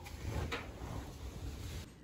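Bedsheets being pulled out of a clothes dryer's drum: soft fabric rustling and handling noise, with a faint knock about half a second in.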